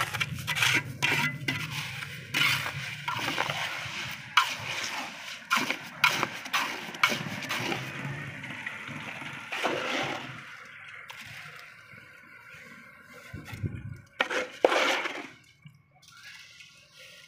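A steel trowel scraping and scooping wet concrete mix into a small pot, with repeated sharp scrapes and clinks against the pot. Near the end the wet concrete is tipped out with a few loud, wet slops.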